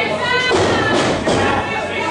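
A thud on the wrestling ring's mat about half a second in, amid voices shouting from the crowd.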